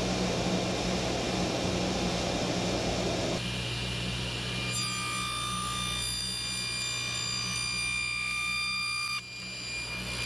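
Table saw running with a steady motor hum. For the first three seconds or so the blade rips a long board. Then it runs free, and from about five seconds in a high steady whine sounds as a narrow piece stood on end is pushed through the blade; the whine cuts off suddenly about nine seconds in.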